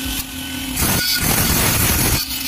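Cordless angle grinder running free with a steady whine, then about a second in the disc bites into the edge of a sheet-steel tray. It grinds the metal with a loud, hissing rasp that throws sparks.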